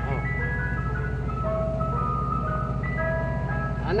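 Mister Softee ice cream truck's chime playing its jingle, a tune of clear single notes stepping up and down, over a steady low hum.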